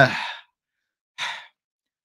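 A man's voice trailing off into a breathy sigh, then after a brief silence a short breath about a second later.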